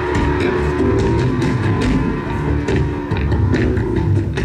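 A metal band playing live through a stage PA: electric guitar and bass over a drum kit with frequent cymbal hits.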